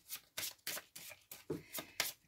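Tarot cards being handled: a quick series of short, soft rustling strokes as cards slide against one another under a hand.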